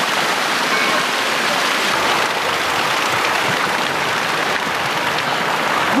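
Steady rush of water pouring from a long row of 108 animal-head spouts set in a stone wall, splashing onto the metal grating and paving below.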